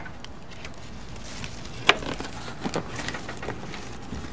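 Light handling knocks and clicks, one sharper about two seconds in and a few smaller ones after, over a steady background hiss.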